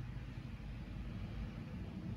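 Steady low rumble and hiss of background noise, with no distinct knocks or clicks standing out.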